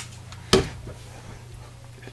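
A single sharp knock of a hard object about half a second in, over a low steady hum.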